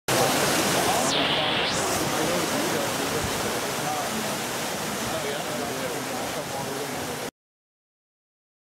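Steady rush of running water, as from a fountain or cascade, with indistinct voices of people talking under it; the sound cuts off abruptly about seven seconds in.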